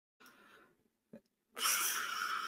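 A man's long, breathy sigh into a close microphone, starting about one and a half seconds in after near silence.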